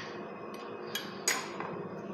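Two sharp metallic clinks about a second in, the second louder and ringing briefly, as steel parts of an opened Yuken hydraulic vane pump are handled and knock together at a bench vise. A steady faint hum runs underneath.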